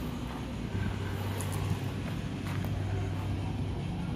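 A motor vehicle engine running with a steady low hum that sets in about a second in, over a low outdoor rumble.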